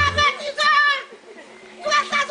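A woman's raised, high-pitched voice shouting and scolding in two bursts, with a lull of about a second between them. Background music cuts off just after the start.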